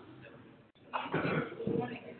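A person coughing and clearing the throat about a second in, in two loud pushes.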